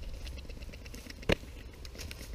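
Small campfire of burning twigs crackling with faint irregular ticks, and one sharp pop a little past halfway.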